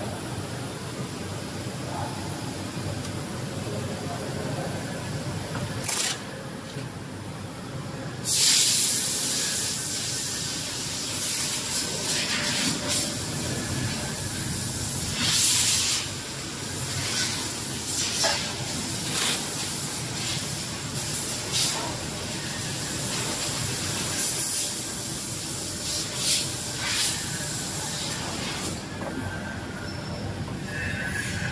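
Steady factory machine hum. From about eight seconds in comes a series of about a dozen short, loud hissing bursts, each under a second, as the tape rolls on a BOPP tape slitting machine's rewind shafts are worked on by hand.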